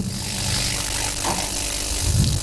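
Steady hiss with a low hum: the background noise of the room recording, heard while nobody speaks.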